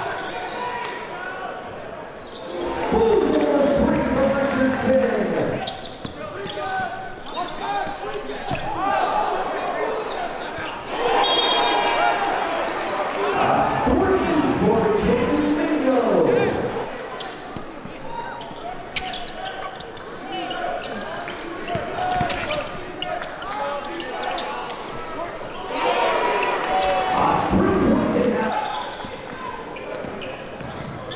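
Live gym sound of a basketball game: a basketball bouncing on a hardwood court under a constant din of crowd voices, which swell loudly three times, near the start, in the middle and near the end.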